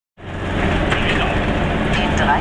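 Goggomobil's small two-stroke twin-cylinder engine running steadily as the car drives along, heard from inside the car; the sound fades in over the first moment.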